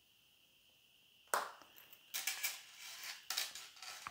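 Leather wallet being handled: a sharp click about a second in, as its strap's snap fastener is pressed, then rustling of leather and light clinks of its metal zipper pulls, with another click near the end.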